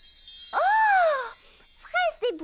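A faint sparkling chime shimmer fades out, then a girl's cartoon voice gives one high, smooth 'mmm' of delight that rises and falls over less than a second, savouring a scent.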